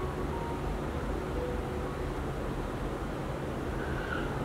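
Steady low rumbling background noise, with a few faint soft music notes over it.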